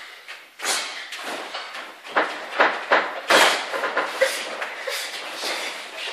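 Boxing gloves landing during children's sparring: an irregular series of short slaps and thuds, about two a second, with gloves striking gloves and headguards.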